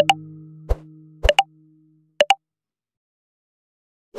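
Subscribe-button animation sound effects: a series of short clicks and pops, two of them in quick pairs, while a held electric guitar chord fades out over the first two seconds.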